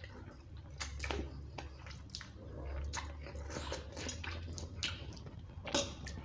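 Close-miked eating of spicy instant noodles: slurping, chewing and wet mouth smacks, with short sharp clicks scattered throughout.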